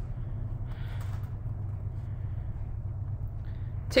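Steady low hum of room noise, with a faint soft rustle about a second in.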